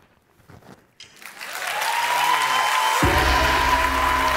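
Audience applause breaks out about a second in and swells. About three seconds in, the chamber orchestra comes in over it with a held chord.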